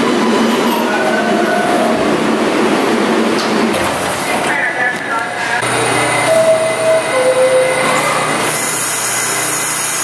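New York City subway train running through a station, with a steady rumble and rail noise and voices faintly over it. Two held tones sound about six to seven seconds in, the second lower than the first.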